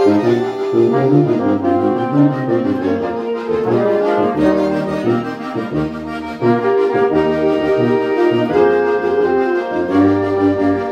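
A small home ensemble of accordions, saxophones, trombone and tuba playing a hymn in full chords over a moving bass line.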